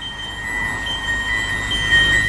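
A steady high-pitched held tone over a low rumble: a tense sustained drone in the cartoon soundtrack.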